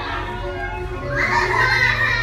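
Background music playing, with a buzzy kazoo note blown loudly over it in the second half, among children's voices.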